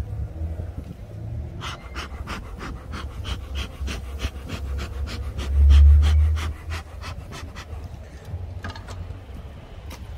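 Bee smoker bellows being pumped: a quick run of short puffs of air, about three or four a second, from about two seconds in to about seven seconds, with a few more near the end. A louder low rumble swells under the puffs around six seconds in.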